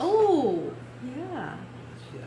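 A woman's long, drawn-out exclamation of "Oh," its pitch rising then falling, followed about a second later by a shorter, softer rise-and-fall vocal sound.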